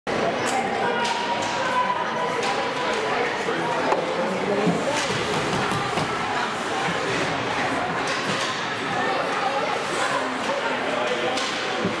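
Ice hockey play in an indoor rink: a steady wash of voices from spectators and players, broken by several sharp knocks of sticks and puck on the ice.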